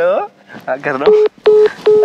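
Mobile phone call tone: three short beeps of one steady pitch, about 0.4 s apart, starting about a second in, as an outgoing call is placed.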